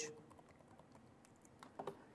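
Faint typing on a computer keyboard, a run of light key clicks with a few louder ones near the end.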